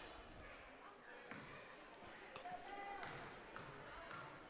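Faint, scattered basketball bounces on the gym floor, with faint crowd voices in the gymnasium.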